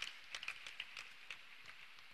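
Faint, irregular clicks and taps, a few each second, over a low hiss.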